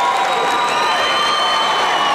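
Arena crowd cheering and applauding a wrestling win by pin as the winner's hand is raised, with long high-pitched calls held above the steady noise.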